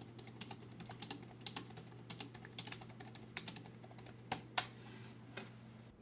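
Quiet typing on a Sablute KG660 chiclet keyboard: a quick, uneven run of soft, light clicks from its low-profile scissor-switch membrane keys. A couple of louder key strikes come about four and a half seconds in, and the typing thins out near the end.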